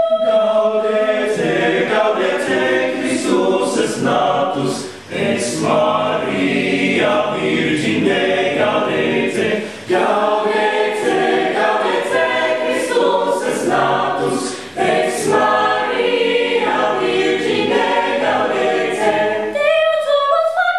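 Youth choir of mixed male and female voices singing unaccompanied in several parts. The phrases are broken by short pauses about five, ten and fifteen seconds in.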